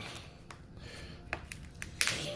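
Raw lobster tail shell cracking as gloved hands pry it apart: a few sharp cracks, one about half a second in and several more in the second half.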